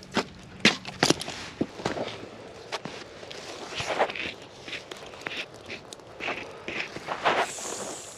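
Footsteps of a person walking over stone paving and dirt while carrying a garden hose: irregular scuffs and knocks, with the hose and fittings rubbing and bumping.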